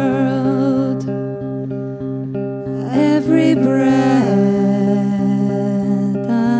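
A live band playing a slow song: several voices sing together over steady held chords. The voices drop out about a second in and come back near the three-second mark.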